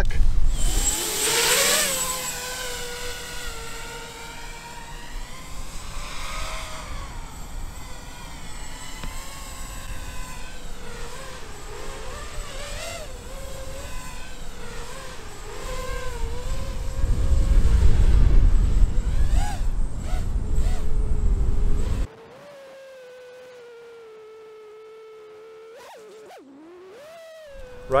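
Motors and propellers of an HGLRC Sector 5 v2 6S FPV racing quadcopter whining as it spins up at takeoff, the pitch rising sharply and then wavering up and down with throttle, and wind rumble on the microphone for a few seconds. The owner suspects motor desync above about half throttle as the cause of its erratic behaviour. For the last few seconds only a much quieter steady whine remains.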